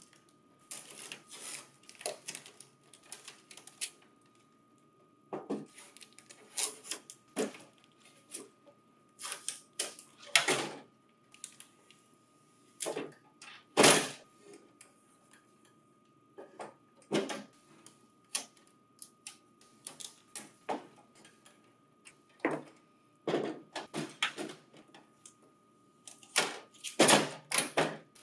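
Orange packing tape being peeled off the grey plastic paper transport unit of a Lexmark staple, hole-punch finisher, with plastic clicks and knocks as the part is turned over and set down on the table. Irregular short rasps and sharp clicks, about one every second or two.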